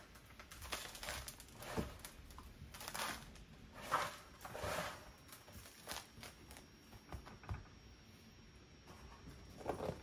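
Gritty potting soil being dropped and spread by hand in a plastic planter trough: faint, irregular rustling and scraping of grit against the plastic, the loudest scrape about four seconds in.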